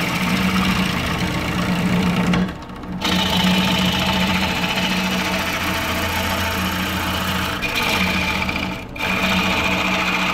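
Wood lathe motor running steadily with a low hum, dipping briefly about two and a half seconds in and again near the end.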